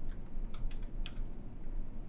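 Computer keyboard keys being tapped in a quick run of about half a dozen keystrokes, most of them in the first second, as a password is typed.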